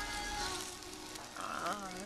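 Rice sizzling and crackling in a hot stone bowl (dolsot) as a spoon presses and scrapes it against the bottom, crisping the rice into a crust, over quiet background music.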